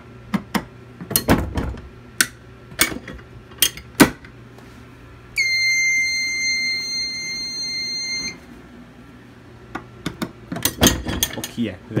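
Clicks and knocks of a fire alarm pull station being reset with a screwdriver, then a steady high electronic beep lasting about three seconds from the fire alarm control panel, and more clicks and handling knocks near the end.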